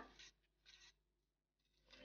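Near silence: room tone, with a couple of faint, brief scrapes.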